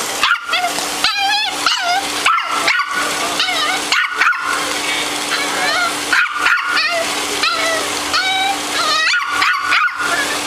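A small curly-coated dog whining and yipping over and over in high-pitched calls that bend up and down in pitch.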